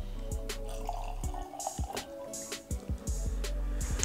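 Whisky being poured from a glass bottle into a small nosing glass, a short trickling pour, over background music with a steady beat.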